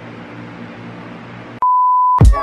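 A quiet steady hum of room tone, then about one and a half seconds in a loud electronic beep at a single steady pitch cuts in abruptly, like an edited-in bleep tone.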